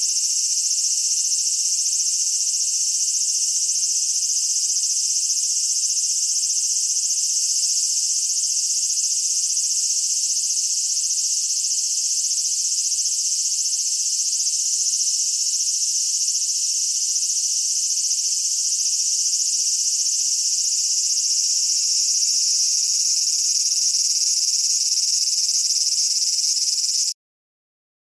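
A steady, high-pitched chorus of cicadas, an unbroken sizzling drone of summer insects.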